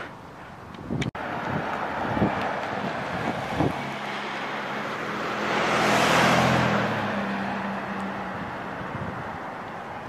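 A car driving past close by, its engine and tyre noise building to a peak about six seconds in and then fading away.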